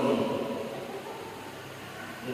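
The end of a man's chanted recitation through a microphone and loudspeaker, its last note dying away in the reverberant hall over about a second. A pause with faint room noise follows.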